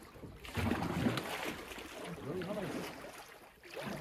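Shallow water sloshing and splashing around a loaded canoe as it is pushed off from the shore and paddled away, with a few indistinct voices in between.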